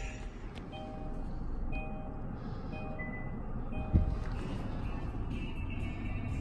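A 2016 Kia Optima's dashboard warning chime sounding about once a second, four or five times, just after push-button start, over the low, steady sound of the engine idling. A single dull thump comes about four seconds in.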